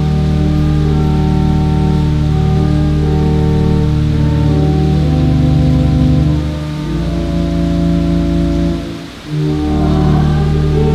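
Organ playing slow, sustained chords that change every couple of seconds, with a deep held bass and a brief break about nine seconds in.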